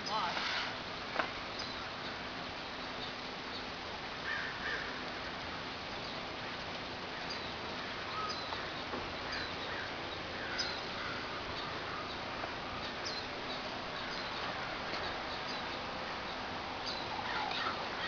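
Outdoor ambience: a steady background hiss with scattered faint bird calls and faint distant voices. A low steady hum runs underneath.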